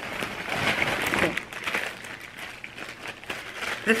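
Plastic shopping bag and packaging rustling and crinkling as items are handled and pulled out, louder for the first second or so, then softer.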